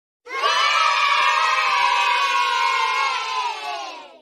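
A crowd of children cheering and shouting together, held steadily for about three seconds and then fading away near the end.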